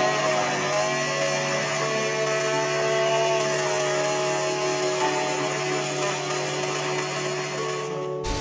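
Veneta personal bottle blender running at full speed, blending a green smoothie with flax seeds: a steady motor noise with a whine that wavers slightly in pitch as the contents churn. It cuts off at the end.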